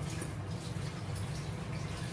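Chopped scallions pushed off a plate and dropping onto minced meat in a plastic bowl, heard as faint, scattered light ticks over a steady low hum.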